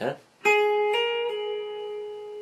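Electric guitar, tuned down a half step, picking a single note on the second string at the tenth fret. The note is hammered on a step higher to the twelfth fret, then pulled off back to the tenth, and it rings on.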